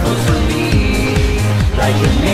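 Electronic pop song with a steady kick-drum beat under synths and a sung vocal line.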